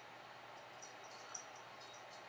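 Quiet room tone: a faint steady hiss with a few soft, faint ticks.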